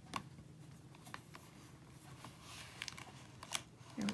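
Faint handling sounds of hands working with stamping supplies at a stamping platform: a few light, scattered taps and a soft rustle.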